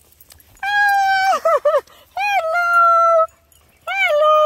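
Small dog whining: a long, high, held whine, then a few quick wavering notes, a second long whine, and a third beginning near the end.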